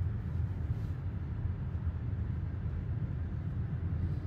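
Steady low road and tyre rumble heard inside the cabin of a 2023 Tesla Model Y Long Range rolling along at low speed, with no engine note from the electric drive.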